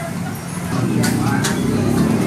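A motor vehicle's engine rumbling low as it passes close by, growing louder about two-thirds of a second in, over voices.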